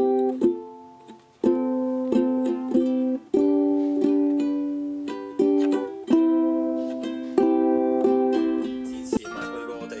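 Ukulele strummed in slow chords, each left to ring, with a brief pause about a second in. Just before the end a busier, noisier sound comes in under the strings.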